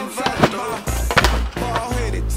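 Skateboard knocking a few times, sharp clacks with two close together just past the middle, over background music with a steady bass line.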